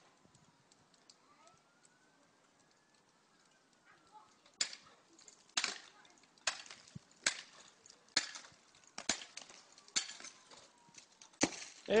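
A length of wood knocking against a snow-laden roof gutter, about nine sharp knocks at roughly one a second starting about four and a half seconds in, to shake the snow loose.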